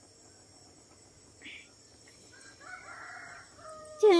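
A rooster crowing faintly once, about three seconds in.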